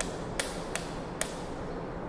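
A switch clicking, pressed four times in just over a second as the ceiling's LED cove lighting is switched off and on.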